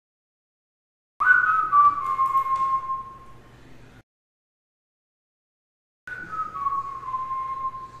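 A person whistling two long notes about five seconds apart, each sliding down in pitch and then held before fading.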